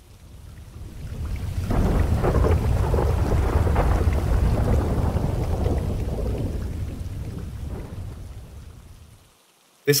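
A long roll of thunder with rain. The deep rumble swells over the first two seconds, holds, then slowly dies away by about nine seconds.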